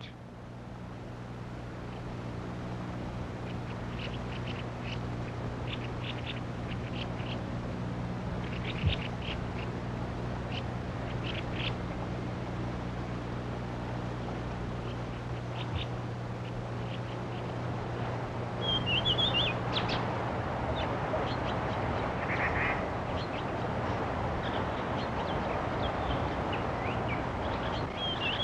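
Birds calling in scattered short notes, with a few warbling calls later on, over a steady hiss. A low hum underneath stops about halfway through.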